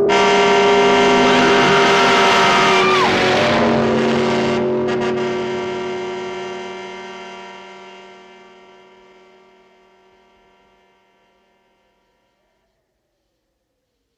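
Film sound of a car smashing through a house: a loud crash of breaking debris that cuts off about four and a half seconds in, under a held chord of many tones that fades slowly to silence over about ten seconds. A short falling cry comes near three seconds in.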